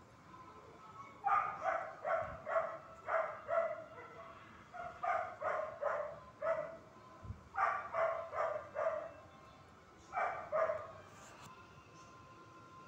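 A dog barking in four short runs of repeated barks, two or three a second, the last run only a pair of barks.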